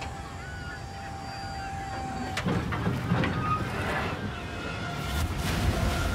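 Wind and sea noise on a crab boat's deck in heavy weather, with sharp knocks about two and a half seconds in and again near the end, where a wave sweeps over the rail and the low rumble swells.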